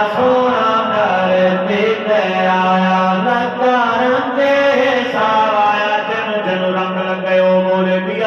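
Men's voices chanting a naat through microphones, one unbroken melodic line with long held notes and gliding ornaments.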